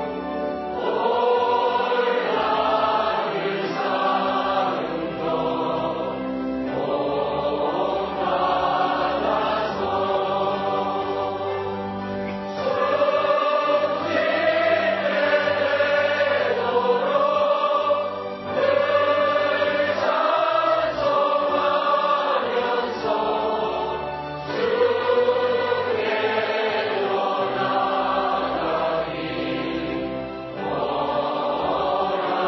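Church choir singing a hymn in long held notes, one sung phrase flowing into the next.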